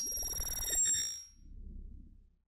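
A ding-like chime sound effect on a video transition card: several high ringing tones, over a low rumble, that fade out after about a second. A fainter low sound follows.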